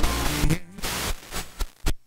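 Outro music mixed with crackling static and glitch noise, choppy and cutting out briefly several times.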